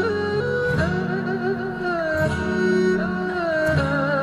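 Slow Chinese traditional-style music: a melody that glides between long, held notes with vibrato, over a steady sustained accompaniment.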